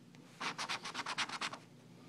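A coin scratching the coating off a scratch-off lottery ticket: a quick run of about a dozen short scrapes lasting just over a second.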